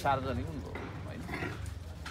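Low background chatter of people standing together in a street, with a steady low hum of street noise, as a man's voice trails off at the start.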